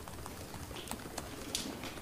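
Quiet room tone in a brief pause between speech, with a few faint ticks.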